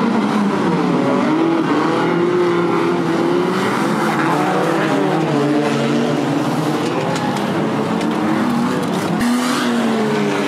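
Several banger race cars' engines running and revving together, their pitches rising and falling over one another. A few sharp knocks of metal contact come near the end.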